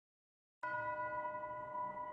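Logo intro sting: a ringing tone of several pitches at once, like a struck bowl or bell, starting suddenly about half a second in over a low rumble and ringing on with a slow fade.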